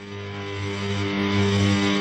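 Opening of a rock song: a sustained guitar chord held on steady notes, swelling louder.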